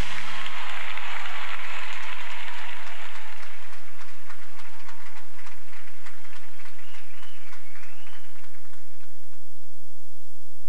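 Audience applauding at the end of a stage music-and-dance number, the clapping gradually thinning out. A short high wavering call rises above it near the end.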